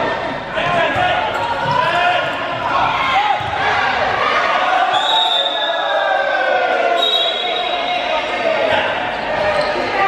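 A handball bouncing and knocking on the wooden floor of an indoor sports court, mixed with players' shouts and calls that echo in the large hall. Near the middle come two steady high-pitched tones about a second each.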